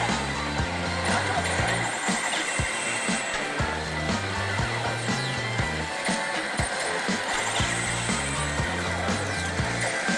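Pachislot machine music with a steady beat and a stepping bass line, over the dense noise of a pachinko parlor.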